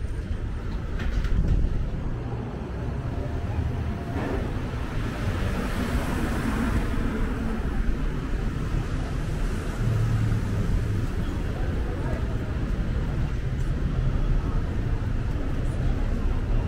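Busy city street ambience: a steady rumble of road traffic, with a vehicle passing by about six seconds in.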